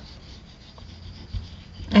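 Faint rubbing and handling noise of a squeeze bottle and hand moving over a paper page on a cutting mat, with a soft low thump about one and a half seconds in.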